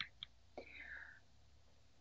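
Near silence in a pause between spoken phrases: a faint mouth click, then a soft breath from the speaker, then room tone.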